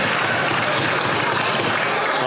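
Members of Parliament applauding in the chamber: a steady din of many hands clapping.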